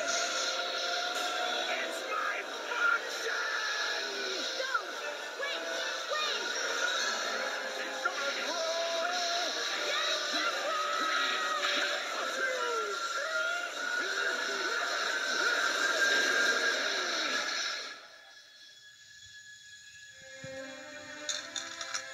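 Animated film soundtrack played on a TV: music mixed with character voices and sound effects, busy and loud. About eighteen seconds in it drops away to a quiet passage with faint music.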